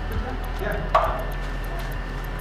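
A single sharp knock about a second in, with a short ring after it, over a steady low hum of equipment.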